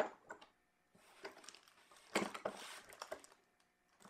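Faint handling sounds from a plastic kit box and its contents: scattered small clicks and taps with a soft rustle of items being moved around the middle.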